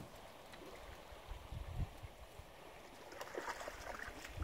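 Faint river current flowing, with a couple of dull low thumps about a second and a half in.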